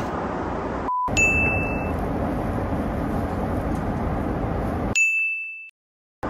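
Two clear, single bell-like dings over the steady rushing hum of an airliner cabin in flight, one about a second in and one near the end. The sound cuts off abruptly just before the end.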